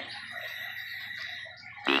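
Faint breathing through a tracheostomy, with a soft, patchy noise over a steady background hiss, between stretches of speech.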